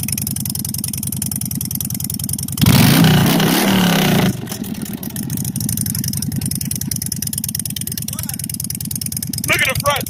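Harley-Davidson V-twin motorcycle idling with a steady, rhythmic beat. It is revved once, louder for about a second and a half a few seconds in, then settles back to idle.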